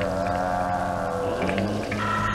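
Eerie horror-animation sound design: a steady low drone under a long, slightly wavering tone with many overtones that fades out about a second and a half in, when a new steady low tone takes over.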